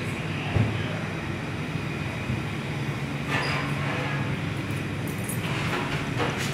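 Large stainless steel pot at a vigorous rolling boil: a steady churning noise over a low hum, with a single knock about half a second in.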